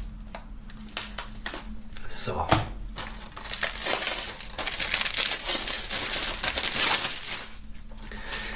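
Plastic shrink-wrap being slit with a knife and stripped off a CD case, crinkling: scattered crackles for the first few seconds, then continuous crinkling from about three and a half seconds in until shortly before the end.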